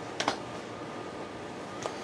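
Two quick sharp clicks about a quarter second in, then one more click near the end, over a steady background hiss.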